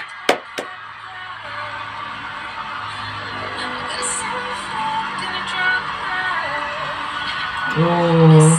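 Three quick hand claps at the start, then music playing under a crowd cheering and applauding, heard as TV-show playback.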